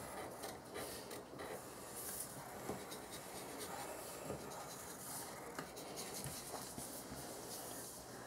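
Pencils scratching on sheets of white paper laid on a table as two people draw outlines, faint and uneven, with small taps and rubs of hands and paper.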